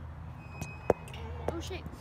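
Phone being handled close to its microphone: a sharp knock about a second in and a smaller one half a second later, over a low steady hum and voices.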